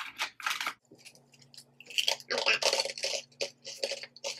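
Close-up crunching of hard, crouton-like tomato-flavoured snack pieces being chewed: a run of irregular, crisp crackles.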